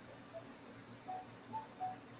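Quiet room tone with four faint, brief tones spread across the two seconds.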